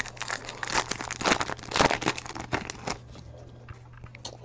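Foil wrapper of a Bowman Draft baseball card pack crinkling and tearing as it is opened, a run of irregular crackles that dies down about three seconds in.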